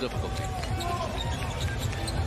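A basketball being dribbled on a hardwood court, with arena crowd noise and faint commentary from the game broadcast.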